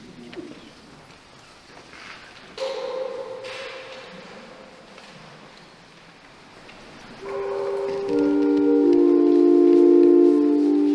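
Sustained organ chords begin about seven seconds in and build as held notes are added one after another, growing louder. Before that, a single ringing tone starts suddenly and fades away over a few seconds.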